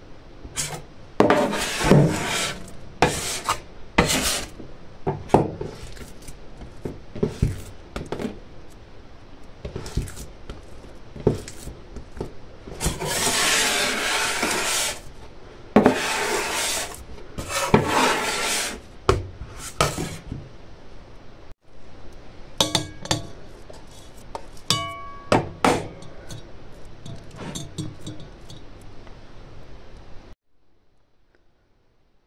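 Yeast dough being kneaded by hand on a worktop: irregular slaps and thuds as it is thrown down and folded, with stretches of rubbing as it is pushed and worked. A few light clinks come in the second half.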